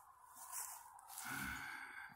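A man's breath close to the microphone, a soft hiss in the pause between sentences, followed by a faint low murmur.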